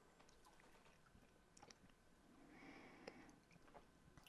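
Near silence: room tone with faint mouth sounds from whisky tasting, a few small clicks and a soft swell a little past the middle.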